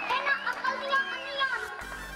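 Children's voices, high-pitched and overlapping. Near the end, background music comes in with a steady low beat.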